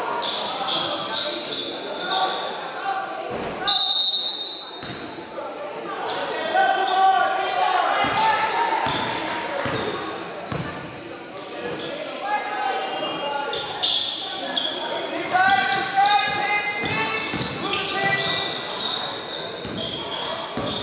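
Basketball game sounds echoing in a gym: a ball dribbled on the hardwood floor, brief high sneaker squeaks, and players and spectators calling out.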